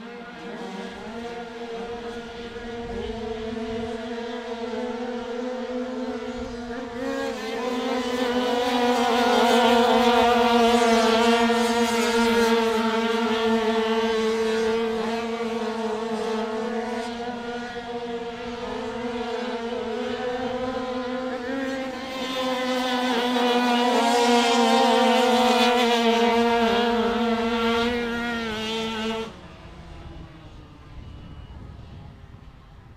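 A pack of 85cc two-stroke speedway bikes racing round the dirt track, their engines holding a steady high note that swells twice as the riders pass close. The sound drops away sharply near the end as the riders shut off for the red flag that stops the race.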